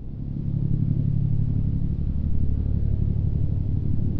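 Pitts Special S2S aerobatic biplane's piston engine running at high power, a low drone that swells louder over the first second and then holds steady.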